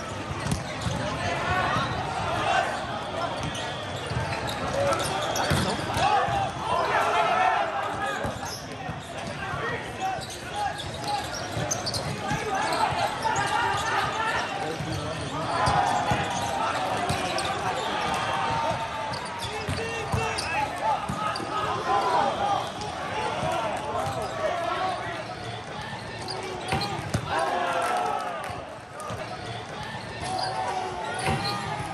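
Volleyball play in a big hall: players shouting calls over a babble of voices from the surrounding courts, with repeated sharp slaps and thuds of volleyballs being hit and bouncing on the court.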